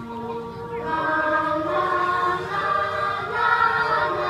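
A children's choir singing a song together, several voices holding and moving between sustained notes. The singing grows fuller and louder about a second in.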